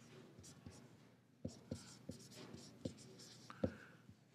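Felt-tip marker writing on paper: faint scratching strokes with a series of light ticks as the tip meets the sheet.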